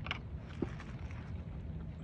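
Low, steady outdoor background noise, with a faint tap about half a second in.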